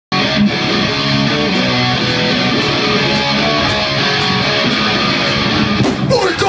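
A live band playing loud, electric guitar to the fore, with a steady beat ticking about twice a second.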